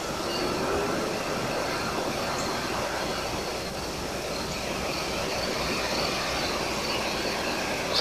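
Steady outdoor background noise: an even hiss that holds at one level, with no distinct events.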